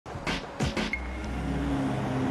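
A car engine running with a steady low hum, after three short noisy bursts in the first second.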